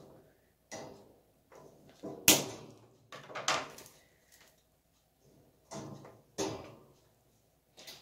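A scattered series of sharp clicks and short metallic rattles: scissors snipping the tail off a nylon zip tie and black steel wire grid panels of a storage-cube system being handled and knocked together. The sharpest, loudest click comes a little over two seconds in.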